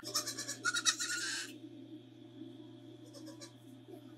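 A young goat bleating once: a short, pulsing call in the first second and a half, over a steady low hum.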